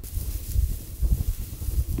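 Wind buffeting the microphone as a heavy, uneven low rumble, with a steady hiss of dry prairie grass rustling.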